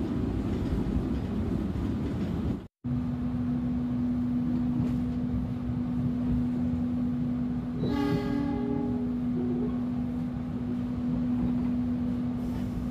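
Passenger train coach interior while the train is running: a steady low rumble, with a steady hum after a brief cut. Near the middle the train horn sounds once for about a second.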